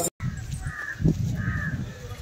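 A crow cawing twice in quick succession over low outdoor rumble, with a dull knock between the two caws.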